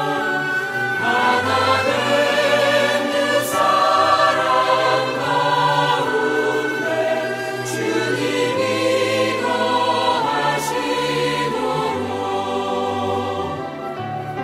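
Music with a choir singing sustained chords over a slowly changing bass line.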